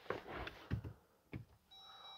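A few light knocks and clicks, then near the end a steady electronic warning tone from the 2023 Jeep Gladiator Rubicon's dashboard as the ignition is switched on.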